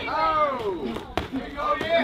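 Men shouting, with a single sharp smack of a gloved punch landing a little over a second in.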